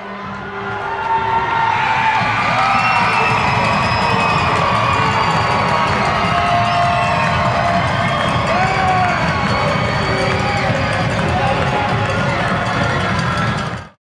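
Hockey arena crowd cheering and shouting at the final seconds of a home win. It builds over the first two seconds, holds loud and steady with whoops and yells over it, and cuts off abruptly at the end.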